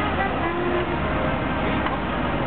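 Massey Ferguson tractor's diesel engine running steadily, the tractor standing still hitched to the pulling sledge at the end of its pull.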